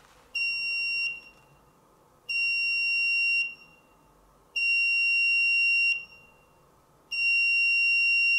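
Small electronic buzzer in a Darlington transistor moisture-sensor circuit, giving four steady high-pitched beeps of about a second each, roughly two seconds apart. Each beep is the acoustic alarm sounding as the circuit closes through damp paper towel.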